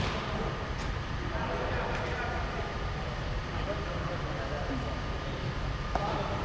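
Ambience of an indoor five-a-side pitch: a steady low rumble with faint distant voices, a sharp knock at the very start and a smaller one at the end.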